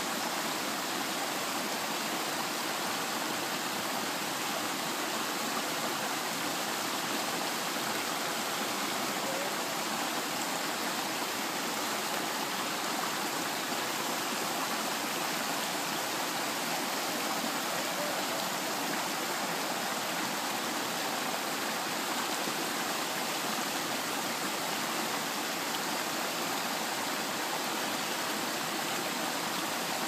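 A shallow, rocky stream running: a steady, even rush of water.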